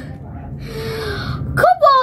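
A person gasps in a long breathy rush, then a voice cries out near the end.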